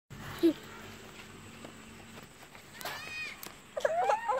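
A toddler's voice: a short high whine about three seconds in, then choppy fussing sounds near the end as he starts to cry. A brief thump about half a second in is the loudest sound.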